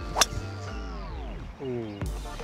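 A golf club striking a ball off the tee: one sharp crack about a quarter of a second in, over background music with a falling tone.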